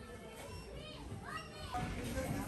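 A young child's high-pitched voice calling out twice over quiet background music.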